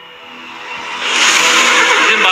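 Held music chords fade under a loud rushing noise that swells up over the first second and then stays steady.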